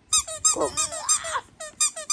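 Squeaky yellow rubber duck toy being squeezed over and over in quick succession, a rapid run of short high squeaks, about seven a second.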